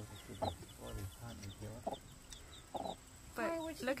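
Broody hen giving a few short, low clucks while her chicks peep in a quick run of small, high, falling chirps.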